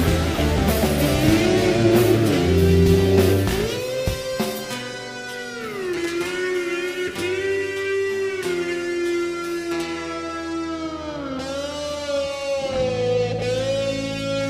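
Heavy rock song recording: the full band plays for the first few seconds, then it thins to a lead electric guitar holding long sustained notes that bend slowly down and back up in pitch over a held bass note.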